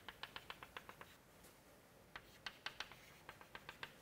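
Faint chalk tapping on a chalkboard as dashed lines are drawn: three quick runs of short, sharp clicks, about seven a second, in the first second, again around two to three seconds in, and near the end.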